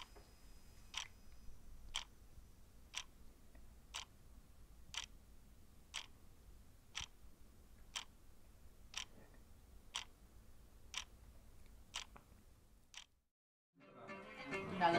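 A clock ticking faintly and steadily, one tick a second, over a faint low hum; the ticking stops shortly before the end.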